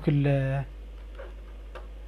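A man's voice holding a drawn-out word for about half a second, then a steady low hum with two faint ticks.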